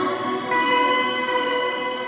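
Electric guitar played through effects pedals into a miked amp: ringing chords, with a new chord struck about half a second in.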